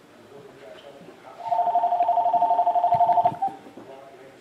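Electronic two-tone ringing sound with a fast flutter, starting a little over a second in and lasting about two seconds.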